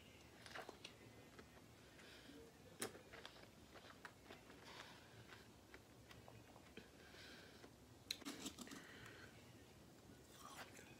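Faint chewing and mouth noises of a person eating fruit, with a sharp click about three seconds in and a cluster of small clicks near the end.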